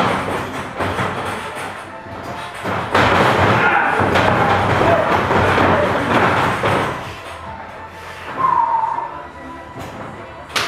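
Background music playing over thuds and stomps of wrestlers' feet and bodies on a padded ring canvas, with the loudest stretch of thumping in the middle as the two lock up.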